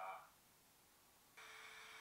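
The last of a man's voice, then near silence, then a steady buzzy electronic beep lasting a little over half a second near the end, starting and stopping abruptly.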